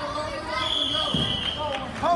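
Raised voices of spectators calling out in a gymnasium, with a single high, steady tone lasting about a second from about half a second in, and a dull thump just after the midpoint.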